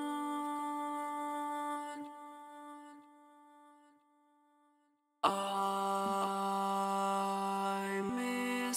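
Harmony vocals from the Neptune voice synthesizer in Reason playing alone: a synthesized voice holding one steady note, with no pitch wobble. It fades away from about two seconds in, leaving a moment of silence, then a new held note starts abruptly just after five seconds.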